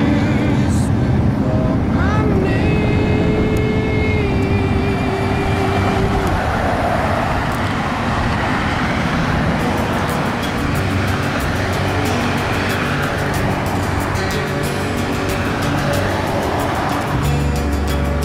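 Cars driving past on a highway, their tyre and engine noise swelling and fading as each one passes, with music playing throughout.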